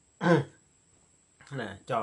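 A man clears his throat once, a short sharp burst about a quarter of a second in.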